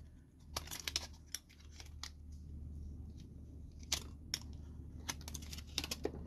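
Scattered light clicks and crinkles of sublimation paper and tape being handled and peeled off a freshly pressed round compact-mirror insert.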